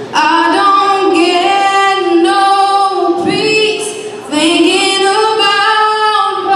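Woman singing a country song solo into a microphone, in long held notes: one phrase, a short breath about three seconds in, then another long phrase.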